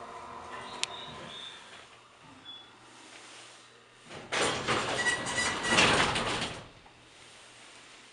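A 1970s hydraulic passenger elevator's steady running hum, with a single click about a second in, dies away as the car comes to a stop. About four seconds in, its sliding doors open with a loud rattling rumble lasting about two seconds.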